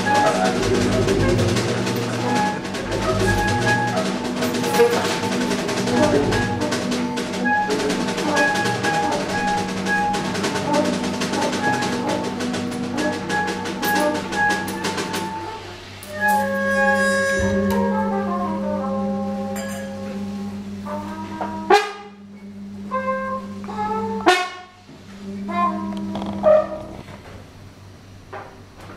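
Live large jazz ensemble of saxophones, clarinets, trumpet, trombone, tuba, double bass and two drum kits. For about the first 15 seconds the full band plays densely over busy drums and cymbals; then the drums drop out and the horns hold long sustained chords, broken by two sudden loud ensemble hits a couple of seconds apart. The sound thins out near the end.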